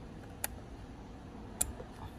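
Two small sharp plastic clicks about a second apart as a fuse puller grips a 10-amp blade fuse and pulls it from a car's interior fuse box.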